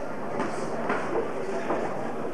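Boxing bout in a hall: irregular knocks and shuffles of the boxers' feet and gloves in the ring over a steady background murmur.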